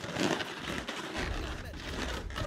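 Latex modelling balloon being handled and rearranged by hand, the rubber making irregular rubbing and scuffing noises.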